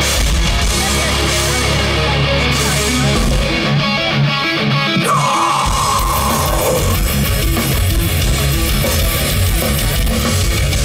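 Live heavy metal band playing an instrumental passage through a festival PA, with distorted electric guitars and a drum kit. About three seconds in, the bass and kick drum drop out for a few seconds. Then a held lead-guitar note falls slightly in pitch, and the full band comes back in.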